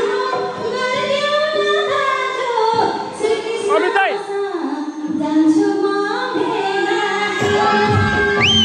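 A woman sings a Nepali dohori folk song in a high voice into a microphone over a live band, amplified through the stage sound system.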